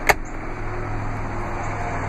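A plastic glove box lid clicking shut once, right at the start, followed by a steady low hum.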